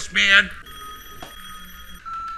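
A telephone ringing: one steady, bell-like ring with several high overtones, starting about half a second in.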